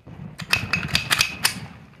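Semi-automatic pistol being unloaded by hand: a quick run of sharp metallic clicks and clacks over about a second as the magazine comes out and the slide is worked.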